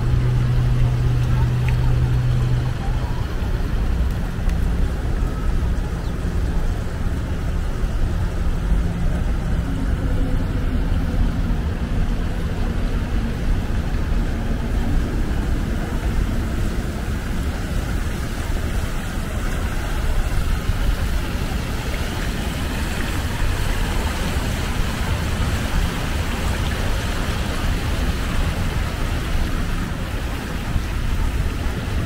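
Downtown street ambience: a steady rumble of city traffic, with a low steady hum in the first few seconds. In the second half the hiss of a fountain splashing into a reflecting pool grows louder.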